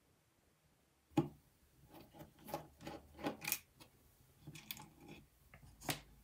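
Light clicks and taps of a small Torx screwdriver working tiny screws, and of the screws being set down on a desk. The taps come in a scattered run beginning about a second in.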